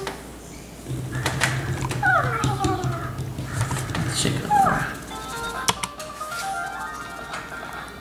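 A Hatchimal electronic toy inside its egg making its creature noises: falling chirp-like calls, then a short tune of stepped electronic beeps near the end. A low motor hum and a few clicks run under the first half.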